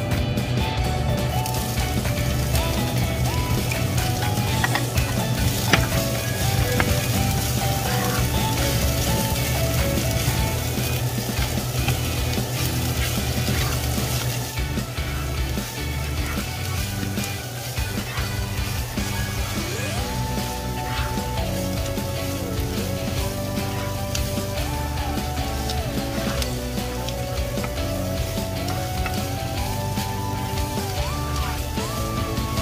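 Diced onions sizzling as they fry in oil in a frying pan while being stirred with a spatula, with background music playing over it.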